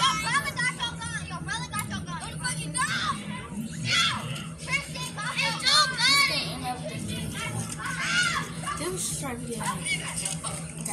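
A group of children shouting and yelling at once, many high excited voices overlapping, louder about four and six seconds in, over a steady low hum.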